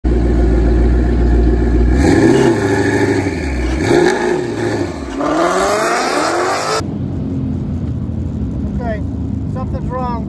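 Ford Mustang GT's V8 held at high revs through a drag-strip burnout, then blipped several times and revved up as the car pulls out of the burnout box. About seven seconds in, the sound cuts to a duller, steady engine sound heard from inside the car, with a voice near the end.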